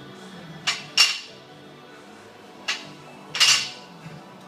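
Loaded barbell clinking as it is gripped and shifted: metal knocking against metal at the plates and sleeves. There are two pairs of sharp clinks with a short ring, one pair about a second in and another near the end.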